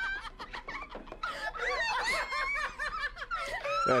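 Laughter: a run of quick, high-pitched laughs in the middle, with a quieter start.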